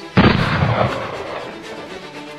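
A single gunshot about a moment in, followed by a long rumbling echo that dies away over the rest of the two seconds.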